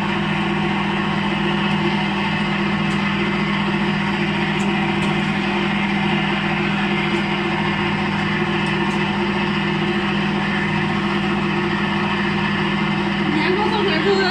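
Belt-driven rice cake extruder running steadily: its electric motor and screw give a constant hum with several fixed tones that don't change. Voices come in near the end.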